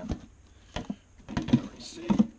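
Plastic jars being handled and set down on a bench: a few short knocks and clunks, the loudest about a second and a half in.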